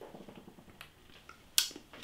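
Quiet mouth sounds of someone tasting a sip of beer: a few soft lip smacks, with one sharper click about one and a half seconds in.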